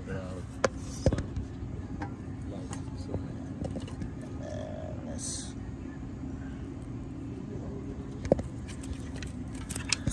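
A few sharp clicks and knocks of hand tools and metal parts being handled under a car, over a steady low background hum.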